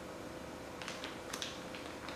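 Faint rustling of thin plastic bags being handled, with a few soft crinkles in the second half.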